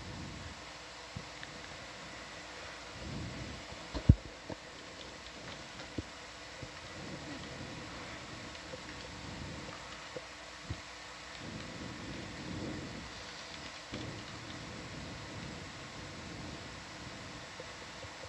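Low, steady background noise of the control room, with a few faint scattered clicks and one sharp knock about four seconds in.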